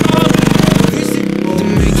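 Small gas engine of a tracked off-road tank scooter running under throttle with a fast, even pulse, over background music.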